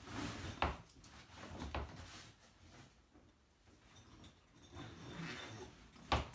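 Heavy canvas tent fabric rustling as it is pulled and handled, with a few short knocks.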